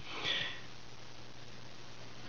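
A short sniff through the nose during a pause in speech, followed by steady faint hiss with a low hum underneath.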